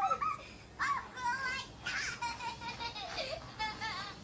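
High-pitched, childlike cartoon voices chattering, played from a smartphone, with faint music under them.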